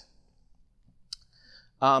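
A single sharp, short click about a second into a pause, as the presentation slide is advanced, most likely a mouse or presenter-remote click. A man's voice starts again near the end.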